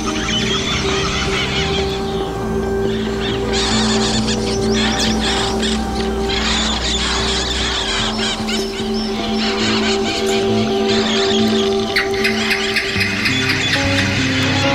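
Minimalist music for electric guitar and electronics: steady held drone notes, with dense, chattering high sounds that come and go above them, in a piece about parrots. The deepest drone drops out about eight seconds in, and a new low note pattern enters near the end.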